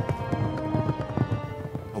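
Hoofbeats of horses on the move, a run of irregular thuds, heard over background music with held tones.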